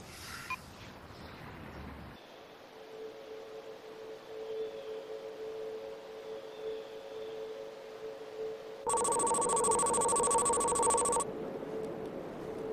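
A low steady electronic tone, then about nine seconds in a loud trilling electronic ring, like a telephone ringer, that lasts about two seconds and cuts off sharply.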